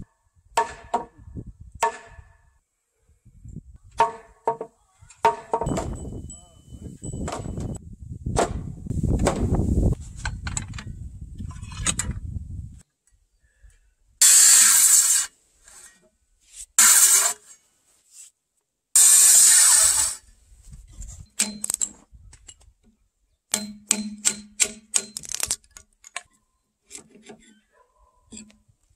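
A C7MA circular saw making three short cuts into the end of a squared timber beam, each about a second long and the loudest sounds here. Before them come scattered knocks and handling of the timber; after them come a run of sharp taps and knocks as a chisel works the cut end.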